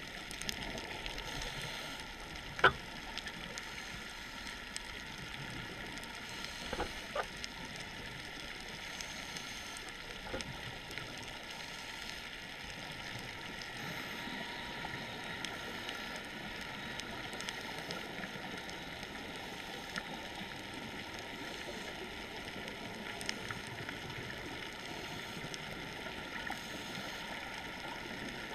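Underwater ambience recorded through a camera housing: a steady hiss with scattered small clicks, and one sharp click about three seconds in.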